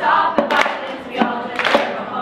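A group of girls singing together, with a sharp percussive hit roughly every half second.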